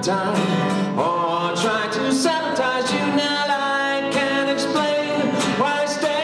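A man singing a slow song while strumming an acoustic guitar.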